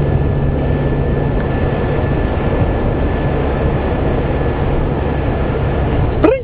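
Steady road and engine noise inside a moving car's cabin, with a low engine hum under it.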